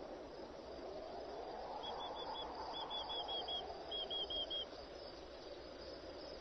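A small bird chirping in three quick runs of four or five short high notes, about two, three and four seconds in, over a faint low ambient wash that swells and fades.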